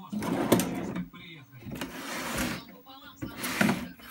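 A wooden pull-out cabinet section running on white metal drawer slides: three rasping sliding strokes, the first about a second long, with a sharp knock as it stops about half a second in and again near the end.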